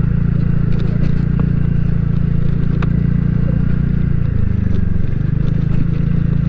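A 125 cc scooter's engine running steadily at low speed, easing off slightly about four seconds in.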